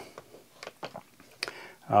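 A few faint, separate clicks of a Milwaukee cordless tyre inflator's buttons being pressed to set its target pressure.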